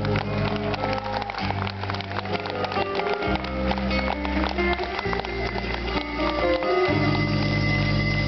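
Live band playing an instrumental passage: acoustic guitar plucking over deep bass notes that change every second or two, with many short ticks of picked strings and light percussion.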